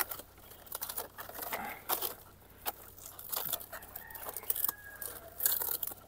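A green coconut being twisted and wrenched off a coconut palm by hand: irregular crackling and tearing of the fibrous stalk and dry palm fibre, loudest near the end as the nut comes free.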